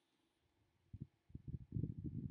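Near silence, then from about a second in, a run of irregular low, muffled thumps and rumbles.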